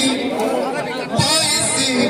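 Several voices talking and calling over one another, with a single drum stroke and a high jingling coming back in about a second in.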